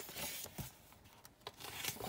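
Paper pages of a paperback booklet being turned by hand: a soft papery rustle at the start, quieter in the middle, then another rustle near the end as more pages are flipped.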